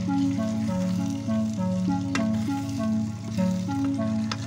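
Background music, a simple melody of held notes, over chicken pieces sizzling in a tomato and chili sofrito as a wooden spoon stirs them in the pot, with a single knock about halfway through.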